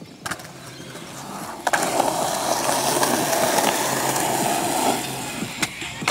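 Skateboard wheels rolling on concrete, with a sharp knock about a second and a half in as the board comes down. Loud steady rolling for about three seconds, then fading near the end.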